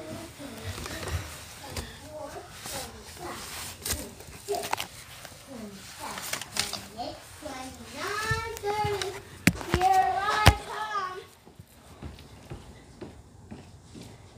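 Children's voices talking in unclear words, with a louder high-pitched child's voice about eight to eleven seconds in and two sharp knocks in the middle of it. It goes quieter over the last few seconds.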